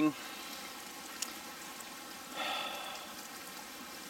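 Steady rushing hiss of spring water running out of a pipe. A faint click comes just over a second in, and a short breathy sound from the drinker about two and a half seconds in.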